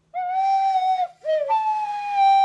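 Plastic soprano recorder played: one held note, a short lower note that slides down, then a higher note held on.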